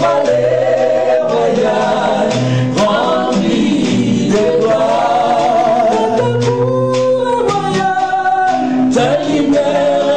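Gospel worship song sung live by a woman's voice with other voices joining in, accompanied by an acoustic guitar. The singing is continuous, with long held notes over a steady low bass line.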